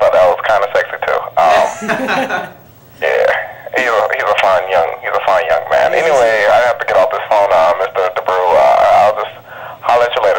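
Speech only: voices talking, with a short pause about two and a half seconds in.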